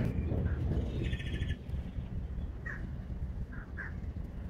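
Birds chirping: a short, rapid trill about a second in and a few brief high chirps later, over a steady low background rumble.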